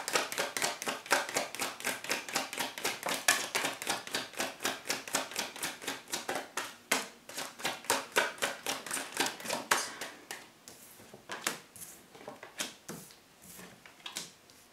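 Tarot cards being shuffled by hand: a fast, even patter of card-on-card clicks, about five a second. After about ten seconds it thins to a few separate taps as cards are laid down on a wooden desk.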